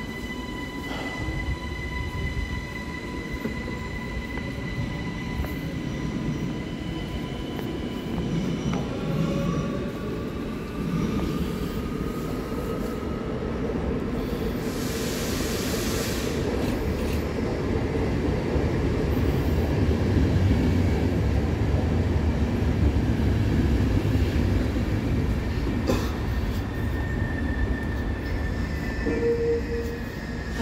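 ÖBB Cityjet double-deck electric train pulling into the platform. A steady electric whine at first, then the rumble of the wheels grows louder as the train comes alongside, with a brief hiss about halfway through.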